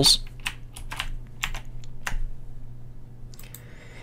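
Computer keyboard typing: a quick run of separate keystrokes through the first two seconds, then a few more clicks near the end.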